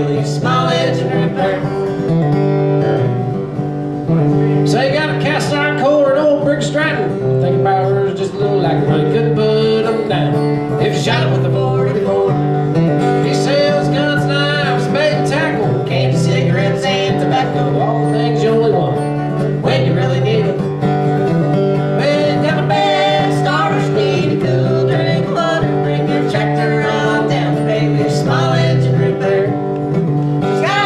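Acoustic guitar playing a country-style song live, with singing over it.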